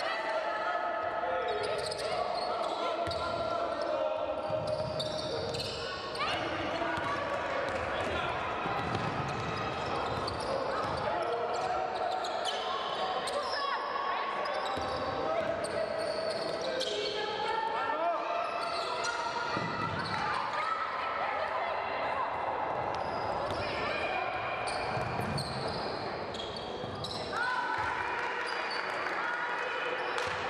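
Live game sound of women's basketball in a large, echoing sports hall: the ball bouncing on the wooden court and players and coaches calling out during play.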